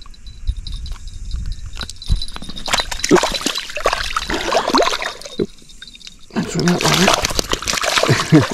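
Shallow river water splashing and sloshing as a small Murray cod is let go by hand and thrashes off, in two bouts of a few seconds with a short pause between.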